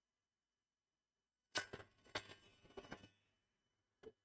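Small cut wooden pieces knocking against each other and on the workbench as they are handled. After near silence, a short run of sharp knocks and clatter begins about a second and a half in and lasts about a second and a half.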